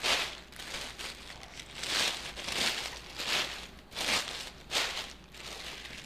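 Layers of tissue paper being crinkled and fluffed out by hand, rustling in repeated short bursts a little more than once a second.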